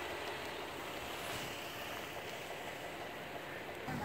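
Steady outdoor background noise, an even hiss and low rumble with no distinct events.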